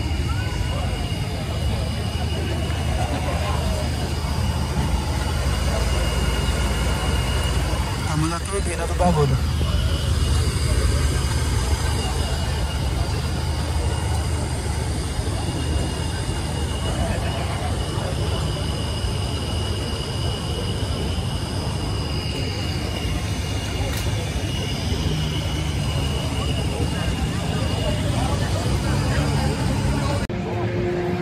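Background chatter of people in a crowd over a steady low rumble, with a faint steady high whine; about eight seconds in, one sound glides down in pitch.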